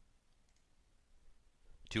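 A pause in a man's spoken narration with only faint room tone, then his voice starts again near the end.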